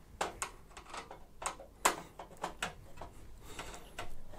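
Cross-head screwdriver undoing a graphics card's retention screw on a PC case's expansion-slot bracket: a run of small, irregular clicks and ticks, the sharpest a little under two seconds in.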